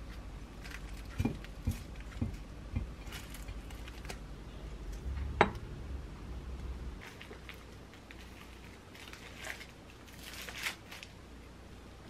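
Soft taps of cherry tomatoes being set on a glass plate, then a sharper clink about five seconds in. Near the end, the burger's paper wrapper rustles as it is handled.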